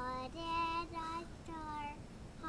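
A three-year-old boy singing a song from preschool, a few held notes of steady pitch with short breaks between them.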